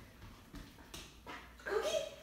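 A dog's short whine near the end, stepping up in pitch and then held briefly.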